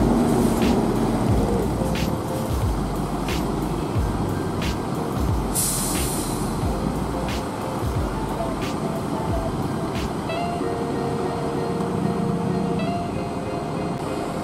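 Diesel engines of large coach buses idling at a standstill, a steady rumble, with a short sharp hiss of released air about six seconds in.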